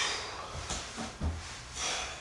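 A man's forceful breaths out through the nose and mouth, about three short puffs, exertion breathing while doing twisting crunches.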